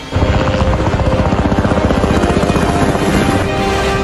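Helicopter rotors beating fast and close, starting suddenly and loudly, with intro music playing under them.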